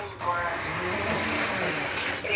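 A steady hiss starts suddenly just after the start and stops near the end, about two seconds long, with people talking quietly beneath it.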